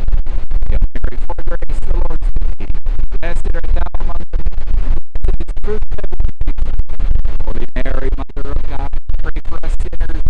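Wind buffeting the microphone: a loud, distorted rumble with constant crackle and many brief dropouts, almost burying a man's speaking voice.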